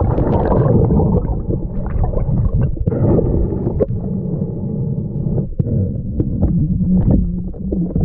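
Muffled underwater noise picked up by a mask-mounted GoPro: a dense low rumble of water moving around the camera while snorkelling, with scattered small clicks and knocks.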